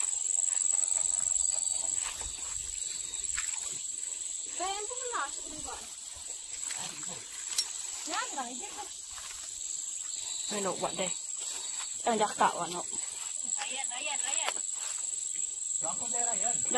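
A steady, high-pitched insect drone, with people's voices talking briefly now and then.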